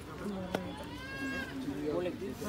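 People talking among themselves. About a second in a high-pitched voice rises over the talk for about half a second, and just before it there is one sharp click.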